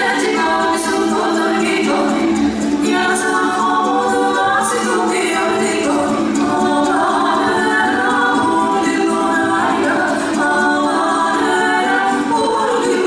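A choir of voices singing a folk-style song in harmony, a cappella, played loud over the hall.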